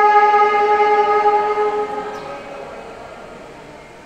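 Alto saxophone holding one long final note, which stops about two seconds in and leaves a fading echo in the hall.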